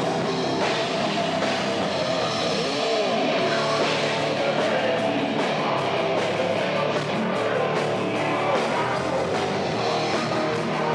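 Heavy metal band playing live: distorted electric guitars and a drum kit, loud and dense without a break.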